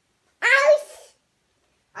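A child's short, high-pitched cry of "ay!" about half a second in, rising then falling in pitch; a second cry starts right at the end.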